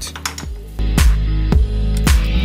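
Background electronic music with a steady beat and deep bass; the bass gets louder a little under a second in.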